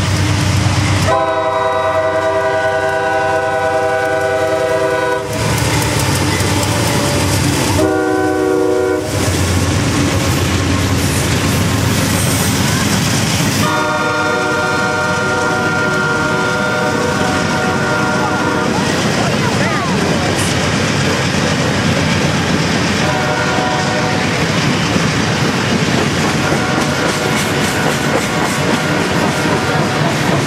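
A CSX diesel freight locomotive's chord horn sounds a long blast, a short one and another long one, then a faint short blast. Under it and after it comes the steady rumble of the passing freight train, its wheels clattering over the rail joints.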